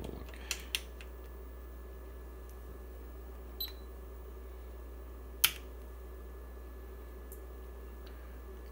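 A few sharp clicks from hands working the probes and controls of a bench power supply, the loudest single click about five and a half seconds in, over a steady low mains hum. A short high beep with a click comes about three and a half seconds in.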